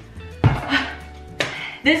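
Large plastic bucket of powdered sugar set down on a kitchen countertop: a thump about half a second in, some handling noise, then a lighter knock a second later, over background music.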